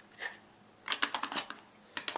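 Plastic Copic alcohol markers clicking against each other as they are handled: a soft click, then a quick run of about half a dozen light clicks about a second in.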